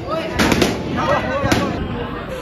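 Two sharp balloon pops, about half a second in and again about a second later, as balloons are burst by squeezing them, over voices and laughter in a crowded room.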